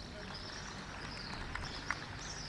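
Faint outdoor background noise between announcements, with a thin, wavering high sound and two light clicks near the end.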